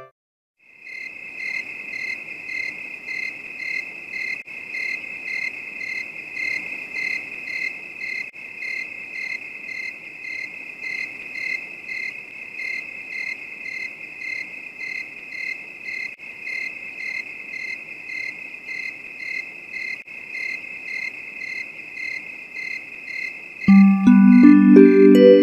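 Crickets chirping steadily in an even, pulsing rhythm of about two chirps a second, a night-time insect chorus. It starts about a second in after a brief silence.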